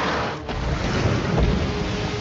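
Cartoon monster roar from a many-headed hydra, a harsh noisy roar that cuts off about half a second in. It is followed by a deep rumbling, loudest about a second and a half in.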